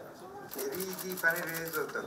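People talking, with a rapid run of camera shutter clicks starting about half a second in and lasting over a second.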